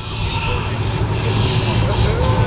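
Car engine running low and steady as a 1980s Lincoln coupe rolls slowly past at walking pace, with crowd chatter behind it.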